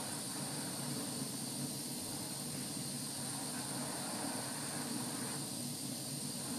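Lampworking glass torch burning steadily with an even hiss while a glass rod is heated in its flame.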